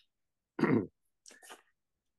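A person clearing their throat once, about half a second in, followed by two fainter short sounds a moment later.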